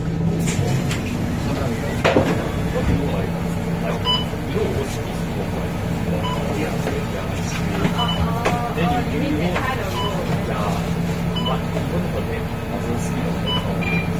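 A MAN D2066 LUH diesel engine of a MAN NL323F bus idling steadily, heard from inside the passenger cabin, under crowd chatter. Short electronic beeps repeat at uneven intervals from a fare card reader as passengers tap their cards.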